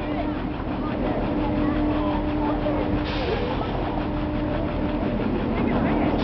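Amusement ride's gondola machinery running with a steady hum while it carries its riders, under voices from riders and onlookers. A brief hiss comes about three seconds in.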